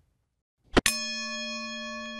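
A bell struck once about three-quarters of a second in, then ringing on steadily with a bright, many-toned sustain. It is the cue that signals an exercise is about to be proposed.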